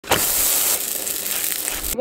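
Flatbread sizzling on a hot pan, a steady hiss that starts with a brief hit as the bread goes down and cuts off abruptly near the end.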